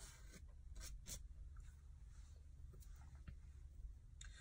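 Faint scratchy brushing with a few light clicks: a soft-bristle paint brush being worked over glued rhinestones to sweep off loose extra-fine glitter.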